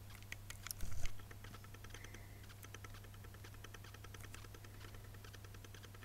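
Glass nail-polish bottle handled close to the microphone: a few sharp clicks and a soft knock about a second in, then a run of faint, even ticks for several seconds, over a low steady hum.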